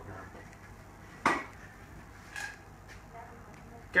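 Glassware and bar things handled on a bar counter: one sharp knock about a second in, then a lighter clink with a brief ring about a second later, as a straw is put into a tall glass of crushed ice.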